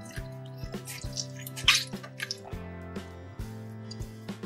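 Water squirting out of a squeezed soft plastic squeeze toy and dripping and splashing into a bowl of water, with one louder spurt about halfway through. Background music plays throughout.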